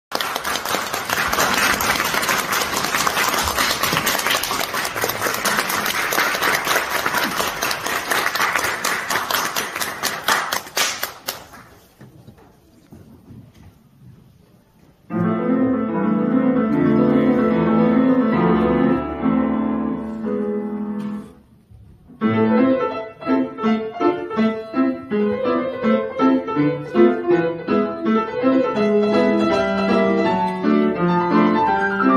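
Audience applause for about the first eleven seconds, dying away into a few seconds of quiet room tone. A grand piano then begins a tarantella about fifteen seconds in, with many quick notes, breaking off briefly about six seconds later before carrying on.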